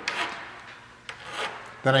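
Flat hand file scraping across the corner of a small aluminium bracket in a couple of short strokes, rounding off the sharp 90-degree corner and its burr.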